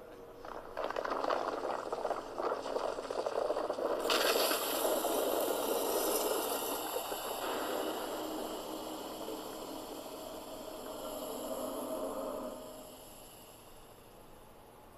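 Smoke-burst effect: a rumbling build-up from about a second in, then a loud hissing rush from about four seconds in that slowly fades out near the end.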